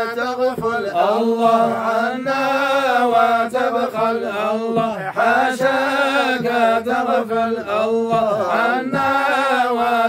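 A group of men chanting an Arabic devotional praise of the Prophet Muhammad, voices together in long, wavering held notes.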